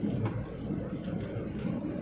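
A moving road vehicle's steady low engine and road noise while travelling along a highway.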